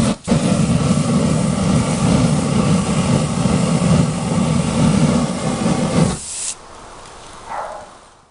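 Axe body-spray aerosol can sprayed through a flame as a makeshift flamethrower: a loud, steady hissing rush of burning spray that cuts off suddenly about six seconds in.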